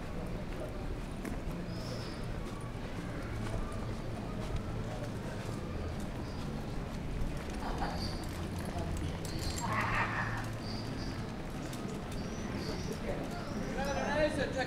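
Busy pedestrian street: footsteps on stone paving and the chatter of passers-by, with a few short high chirps.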